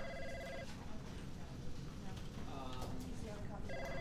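Electronic ring of an office desk telephone, sounding for under a second at the start and again just before the end, over low office room noise with faint voices.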